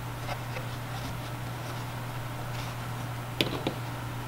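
Light clicks and taps of wooden clothespins being handled and unclipped from a cardboard-box loom while woven sock loops are worked off it, with a sharper cluster of clicks about three and a half seconds in. A steady low hum runs underneath.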